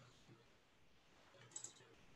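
Near silence, broken by a quick pair of faint, sharp clicks about one and a half seconds in.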